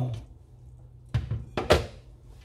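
Glass lid with a steel rim lifted off a stainless-steel stockpot, knocking against the pot: a couple of light clinks a little over a second in, then a louder ringing clank. A faint steady low hum sits underneath.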